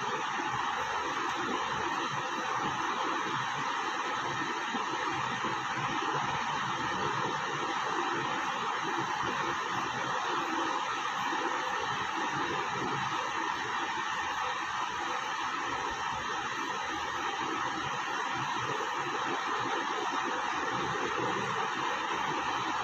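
Steady, even background noise: a continuous hiss with no speech, unchanging throughout.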